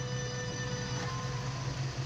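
A steady low machine hum with faint steady tones above it, even throughout.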